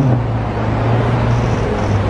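Street traffic noise with a steady low engine hum under a wash of road noise.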